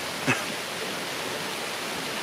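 Steady rain falling, an even hiss, with a brief vocal sound from the man about a third of a second in.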